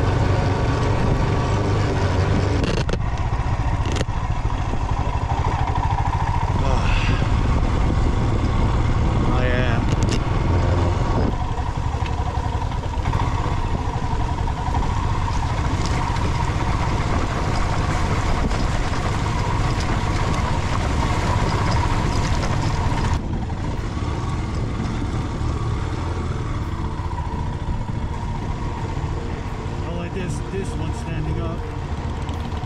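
Motorcycle engine running steadily while riding, with a heavy low rumble of wind on the camera's microphone. The sound changes abruptly several times where shots are cut together.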